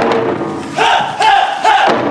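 Japanese taiko drum struck once, then about a second in the performers give a loud group shout (kakegoe) in three short joined calls.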